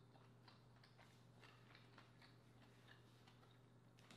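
Faint, irregular wet mouth clicks, a few a second, from chewing baked green-lipped mussel with the mouth closed, over a low steady hum.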